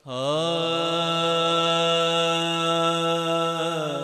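A man singing the opening of a Punjabi naat with no accompaniment: one long held note that slides down into pitch, then holds steady and wavers slightly as it fades near the end.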